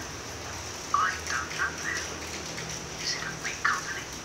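Short bird calls in the background: a few chirps about a second in and again near three seconds, over a steady faint hiss.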